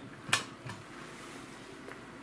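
A sharp click, then a faint steady hiss of HF band noise from the Yaesu FT-710 receiver tuned to 40 metres.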